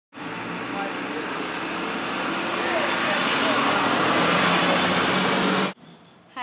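Outdoor street noise: a loud, steady rush of traffic that swells slightly, with faint voices in it, cutting off suddenly shortly before the end.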